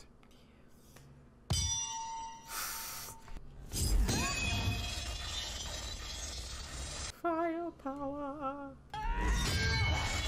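TV-show duel soundtrack: a sudden clash of lightsabers against a beskar spear about a second and a half in, ringing afterwards, then a heavier clash around four seconds. Score music with a wavering held note follows near the end.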